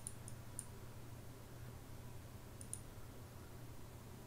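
Computer mouse button clicks: three quick clicks in the first half second, then two more in quick succession about two and a half seconds in, over a faint steady low hum.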